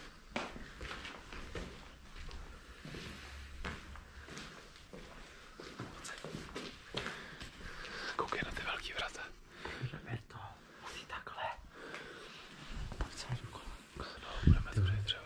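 Hushed, whispered talk between two people, with footsteps and small knocks from the debris underfoot.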